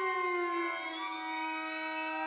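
Violin, viola and cello holding long bowed notes together, the lowest line sliding slowly down in pitch in the first second and then holding steady while the higher lines drift.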